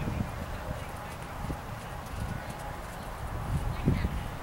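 Horse's hooves striking sand arena footing, a steady run of dull, muffled thuds.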